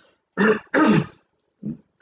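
A man clearing his throat: two short, rough voiced bursts about half a second in, then a brief third one near the end.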